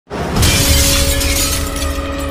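Cinematic intro soundtrack: a sudden hit with a glassy shattering sound over music with a deep low end.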